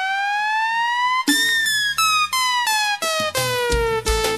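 Piseiro song intro on an electronic keyboard: a lead synth tone glides steadily upward like a siren, then breaks into a melody of held notes. A deep bass-drum beat comes in near the end.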